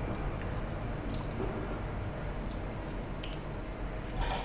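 Lips pressing and parting over freshly applied sticky lip gloss, making a few short, soft wet smacks.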